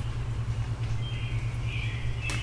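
Steady low rumble of distant vehicle traffic, with a songbird starting to sing high over it about halfway through.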